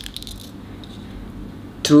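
A sharp click, then a few faint light ticks in the first half-second as fishing line and a steel wire leader are handled through a split ring, over a low steady room hum.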